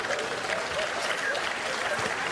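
A large live audience applauding, with scattered voices in the crowd.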